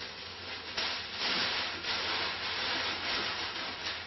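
Tissue paper rustling and crinkling as it is wrapped around a small glass decanter lid, fainter at first and fuller from about a second in.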